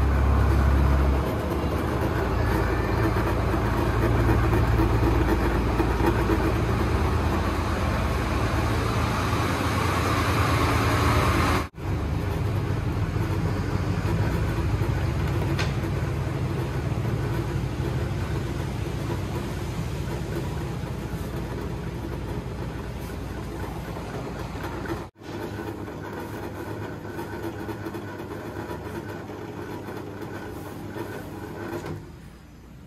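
Homemade 12 V to 220 V inverter humming steadily as it powers lit bulbs, a low mains-type buzz with a noisy edge. The sound drops out suddenly and briefly twice, about twelve and twenty-five seconds in.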